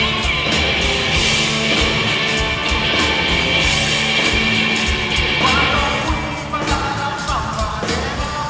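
Rock band playing live in a theatre: drums keeping a steady beat under electric guitars, bass and acoustic guitar in a loud, dense instrumental passage. About five and a half seconds in a guitar slides upward, and the bright upper layer of the mix thins out shortly after.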